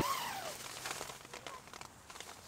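The vestibule zipper of an MSR Freelite 2 tent's nylon rain fly being pulled open, a quick zip right at the start, followed by the crinkling rustle of the fly fabric as it is drawn back.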